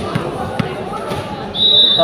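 Background chatter and a few faint knocks echo in a large gym. About one and a half seconds in, a referee's whistle sounds: one loud steady blast that runs on past the end.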